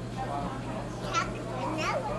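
A toddler's voice: two short high-pitched vocal sounds, one about a second in and another near the end, over a steady low hum.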